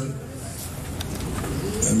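A dove cooing in the background during a pause in speech.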